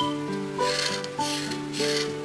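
Marker tip rubbing back and forth on paper in repeated scratchy strokes as a shape is coloured in. Background music with a simple melody of held notes plays under it.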